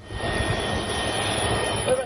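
Steady drone of a small single-engine propeller plane flying low past.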